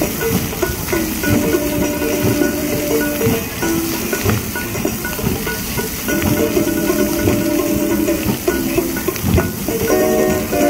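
Music for a musical fountain show, a slow melody of long held notes. Under it runs the steady hiss and splash of the fountain's water jets.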